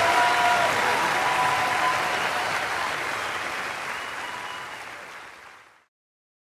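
Audience applauding, steadily fading out to silence near the end.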